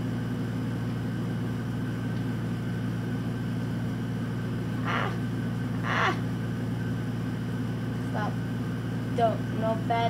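Steady low background hum, like a fan or air conditioner running, with two short breathy vocal sounds about five and six seconds in and brief murmurs near the end.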